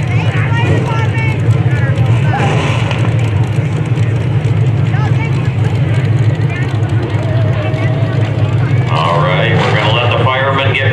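Engines of several front-wheel-drive stock cars running and revving on a dirt track, rising and falling in pitch over a steady low drone. Crowd voices underneath, swelling about nine seconds in.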